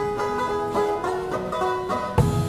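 Banjo picking the intro of a traditional country song, a quick run of plucked notes on its own.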